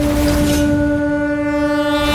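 Background score: one long held horn-like note, steady in pitch, that turns fuller about half a second in as higher overtones join, over a low rumble.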